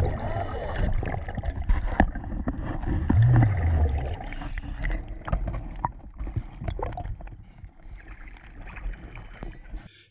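Water heard through a diver's camera: a low bubbling rumble while it is underwater in the first few seconds, then quieter lapping and small splashes of lake water at the surface, fading toward the end.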